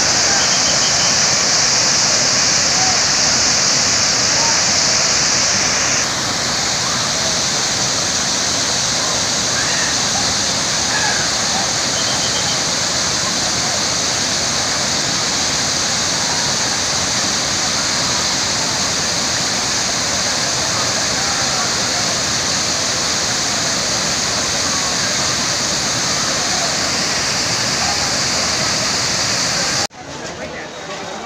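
Waterfall: a steady rush of falling water, with crowd voices faintly underneath. The level steps down slightly about six seconds in.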